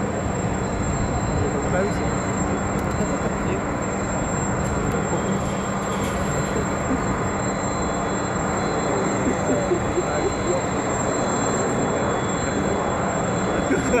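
Jet noise from a JF-17 Thunder fighter's Klimov RD-93 afterburning turbofan in flight, a steady rushing rumble that holds its level throughout.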